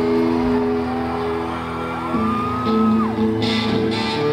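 A live rock band's electric guitars hold sustained notes, with a long high note rising and falling over them. Near the end, strummed guitar comes in as the next song starts.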